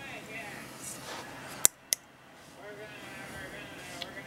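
Two sharp clicks about a quarter second apart, a little over one and a half seconds in, from tongs knocking against a plastic shipping cup. A faint voice sounds underneath.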